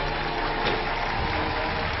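Studio audience applauding steadily, with background music playing underneath.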